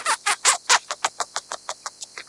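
Scaly-breasted munia (nutmeg mannikin) calling: a rapid run of short, clipped notes, about six a second, loudest about halfway through.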